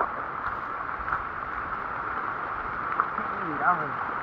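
Heavy rain falling steadily on leaves and ground, mixed with the rushing of a swollen, muddy river.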